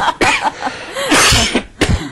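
A man coughing: a long rough cough about a second in, then a short one near the end.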